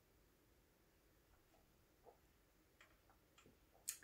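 Near silence: room tone, with a few faint short clicks in the second half.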